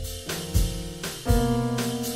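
Slow instrumental jazz: held keyboard chords over a walking bass line, with soft drum-kit hits about once a second.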